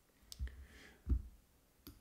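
A few faint, separate clicks of a computer mouse operating the recording software, one of them about a second in with a low thump.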